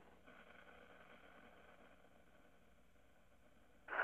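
Near silence: a faint steady hiss with a low hum, fading slightly over the pause.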